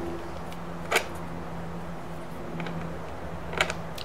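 Light clicks of chrome knurled control knobs being pushed back onto a Telecaster's potentiometer shafts, the sharpest about a second in and a few more near the end, over a steady low hum.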